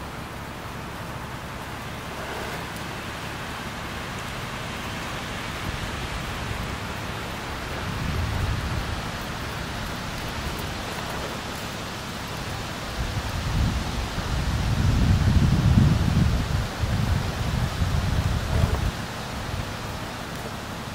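Wind on the microphone: a steady hiss with low rumbling gusts, a short one about eight seconds in and a longer, louder one from about thirteen to nineteen seconds in.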